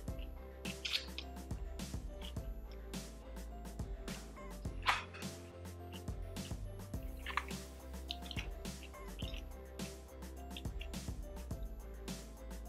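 Soft background music with a steady low bass, over wet chewing and mouth clicks of someone eating food with chopsticks; one click about five seconds in is louder than the rest.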